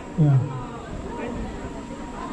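A man's voice says a short, low, falling "ya", then steady outdoor background noise with no clear single source.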